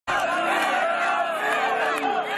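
Crowd of fans cheering and shouting, many voices overlapping at a steady, loud level.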